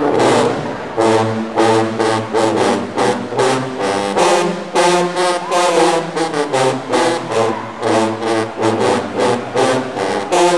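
Marching band sousaphone section playing a loud, punchy brass riff of short, clipped chords, about two a second.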